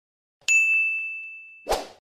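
Notification-bell sound effect from a YouTube subscribe animation: one bright ding about half a second in, its high ringing tone fading over about a second, then a short noisy burst near the end.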